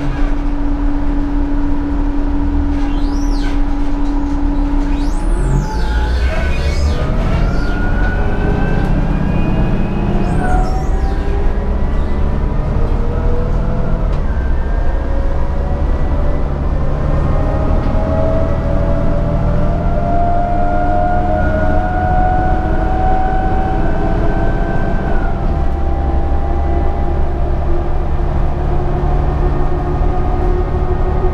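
Cabin sound of a 2013 New Flyer D60LFR diesel articulated bus under way: the drivetrain runs with a steady low drone, then from about five seconds in several whining tones climb slowly as the bus picks up speed. There are a few brief high squeaks in the first ten seconds.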